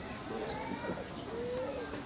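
A bird calling against a background of people's voices talking. One call is a short held note about three-quarters of the way in.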